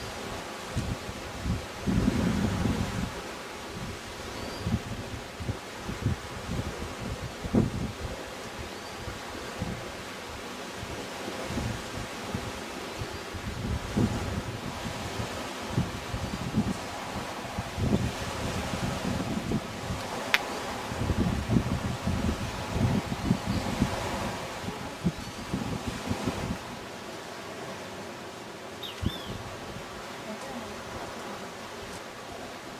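Wind gusting on the microphone in irregular low buffets, with leaves rustling and a steady outdoor hiss.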